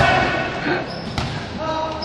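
Basketball bouncing on a hard court: two sharp impacts about a second apart, with players' voices calling out around them.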